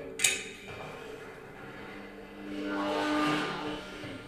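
A tam-tam in an experimental improvisation with acoustic feedback: a sharp hit about a quarter second in, its shimmer dying away, then a shimmering wash that swells and fades in the second half over steady low tones.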